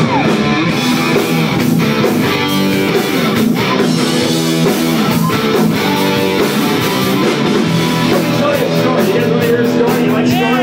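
A rock band playing loud and live, with the electric guitar to the fore.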